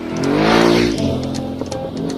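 Aprilia Tuareg 660's parallel-twin engine as the motorcycle passes close by at speed, swelling to its loudest just under a second in, with its pitch rising and then dropping as it goes past.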